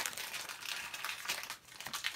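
Foil wrapper of a Pokémon trading-card booster pack crinkling as it is handled and opened and the cards are pulled out.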